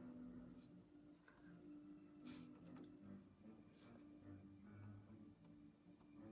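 Near silence: a low steady hum, with a few faint, brief scratchy strokes of a paintbrush on canvas.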